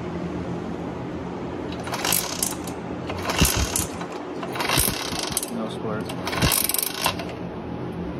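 A 1967 Gilera moped's engine and pedal drive being spun over by hand without firing. It gives four short bursts of rapid mechanical clicking, a second or so apart.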